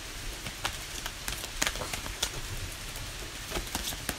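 A steady hiss with a few scattered light clicks at irregular moments.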